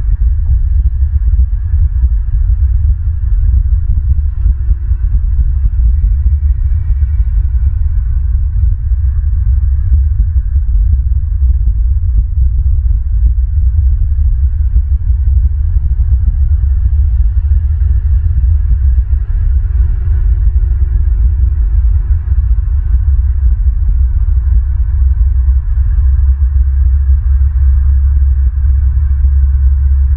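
Wind buffeting an outdoor microphone: a loud, low rumble that flickers continuously, with only a faint hiss above it.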